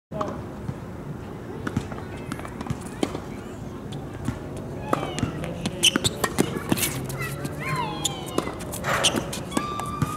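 Tennis balls struck by rackets and bouncing on a hard court: a string of sharp pops and knocks, the loudest about six seconds in. Faint voices and calls come from around the courts.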